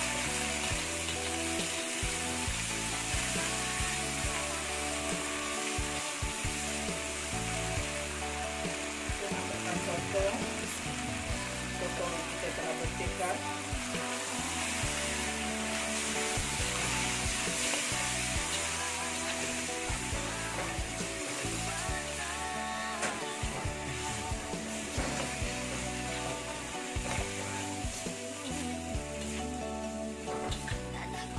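Sambal chili paste sizzling in a hot wok as it is stirred with a spatula, with squid added partway through and frying in the sauce. Background music plays underneath.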